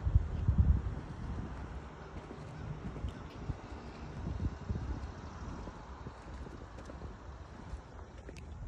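Wind buffeting the microphone with uneven low rumbles, strongest in the first second, over a faint steady outdoor hiss.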